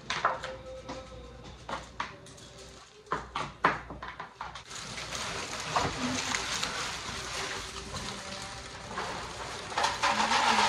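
Kitchen work sounds: several sharp clicks and knocks of utensils and containers on a countertop, then about halfway through a steady rushing noise sets in and carries on.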